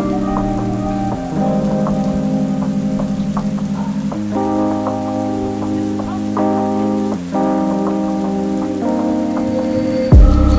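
Lofi hip-hop track of sustained chords that change every couple of seconds, mixed with rain on window glass and light taps of drops.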